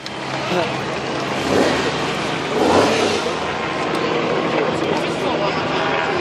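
Crowd applauding and cheering over the steady low running of a supercharged, cammed 6.8-litre V8 in a Holden GTO coupe moving at low speed.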